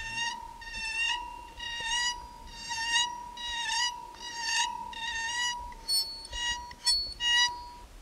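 A coiled metal spring bowed with a violin bow, giving a steady high ringing tone. Back-and-forth bow strokes about once a second add squeaky, buzzing overtones, and near the end the strokes turn shorter and higher.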